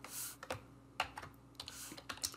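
Computer keyboard keys pressed: a handful of separate, irregularly spaced keystrokes, the kind made selecting, copying and pasting text.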